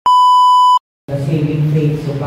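Colour-bars test-tone beep: one steady, high electronic tone lasting under a second that cuts off suddenly, followed by a brief silence.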